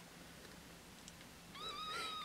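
A newborn Himalayan kitten gives one high, thin, wavering cry near the end, as the kittens jostle over the same nipple while nursing. Before the cry it is near silent.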